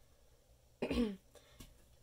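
A person clears their throat once with a short cough, about a second in.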